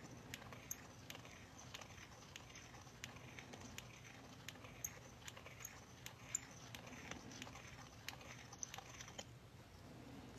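Hand deburring tool's blade scraping around the rough inner edge of the hole punched in a 1969 quarter, smoothing away the burr the punch left. It makes faint, irregular little clicks and scrapes, a few a second.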